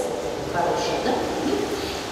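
Speech: a person talking, with no other distinct sound.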